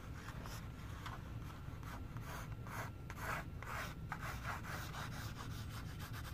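Pencil drawing on a manila file folder wrapped around a cardboard tube: a run of faint, short, scratchy strokes at an uneven pace.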